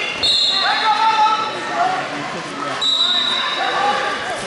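Many people's voices overlapping in a large, echoing gym hall: coaches and spectators calling out during a wrestling bout. Two short, thin, high-pitched squeaks stand out, one just after the start and one about three seconds in.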